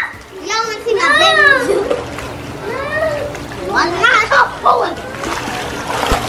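Children splashing in a swimming pool, water churning steadily, with high-pitched children's shouts and calls over it, the loudest about a second in and again around four seconds.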